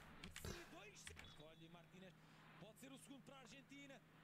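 Faint speech, very low in level: football match commentary playing quietly in the background.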